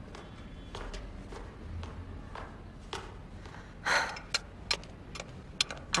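Quiet footsteps on a hard floor with scattered light clicks and knocks, and one louder short noise about four seconds in.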